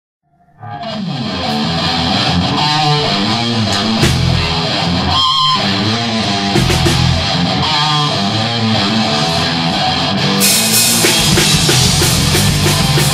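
A rock band playing a song's instrumental opening: two electric guitars, bass, keyboard and drum kit, starting abruptly just over half a second in. The sound grows brighter and fuller about ten and a half seconds in, as the cymbals fill out.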